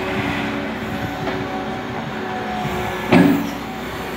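Hyundai skid-steer loader's diesel engine running steadily, with one loud clank about three seconds in.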